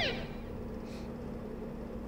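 The end of a TV programme's opening jingle: a quick falling sweep right at the start, then a steady low hum of studio room tone.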